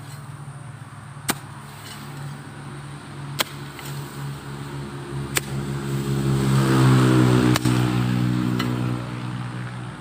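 A road vehicle's engine passing by, growing louder to a peak about seven seconds in and then fading. Over it, a hoe blade strikes the hard ground with a sharp knock about every two seconds while dragging soil into a small grave.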